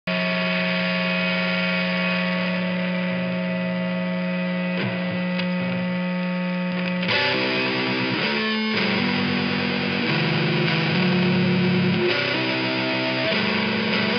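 Fuzz-distorted electric guitar played through an amp: a long chord is held and rings for about the first seven seconds, then the chords change every second or so.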